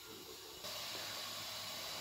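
Faint steady hiss of a pan of liquid heating on an electric hob. It grows slightly louder just over half a second in, then holds even.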